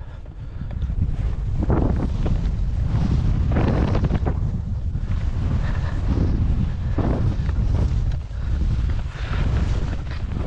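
Wind buffeting the microphone of a skier moving fast downhill, a heavy steady rumble. Over it come louder swooshes every two or three seconds as the skis carve through the snow.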